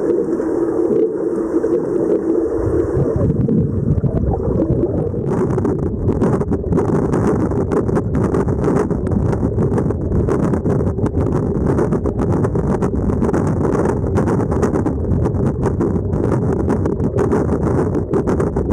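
Underwater recording of a swimming pool: a loud, steady, muffled rush of churning water, with crackling bubbles from about five seconds in.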